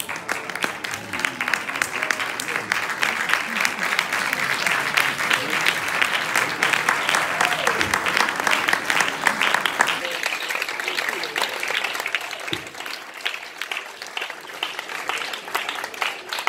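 Audience applauding: a sustained round of many hands clapping, loudest in the middle and easing off slightly in the last few seconds.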